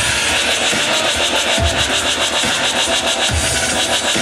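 Dubstep played loud over a venue sound system, with a heavy bass hit about every second and three-quarters under busy hi-hats.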